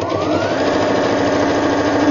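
EverSewn Sparrow X sewing machine stitching a straight seam. Its motor whine rises as it speeds up in the first moment, then holds at a steady fast run with rapid, even needle clatter.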